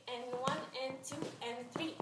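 A woman's voice calling out in short sing-song phrases in time with a dance step, with a few sharp taps between them.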